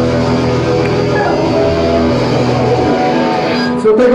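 Live punk rock band's electric guitars and bass ringing out on held chords as the song ends, without drums. The bass drops out about three seconds in.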